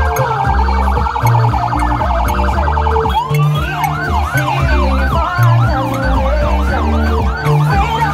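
A siren sounds in a fast pulsing yelp, then switches about three seconds in to a rising-and-falling whoop about twice a second. Music with a heavy bass beat plays underneath.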